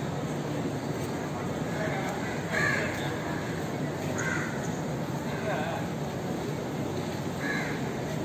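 A bird calling about four times, a second or two apart, the first call the loudest, over a steady murmur of voices.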